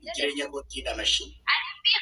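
A string of about four short, high-pitched, meow-like vocal calls whose pitch bends up and down, the last two higher and shriller.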